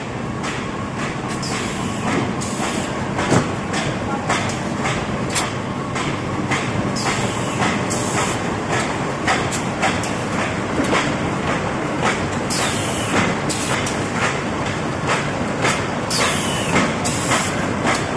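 Automatic corrugated-carton folding, gluing and stitching machine running in production: a steady mechanical din with a dense run of sharp, irregular clacks as the board sheets are fed and carried through.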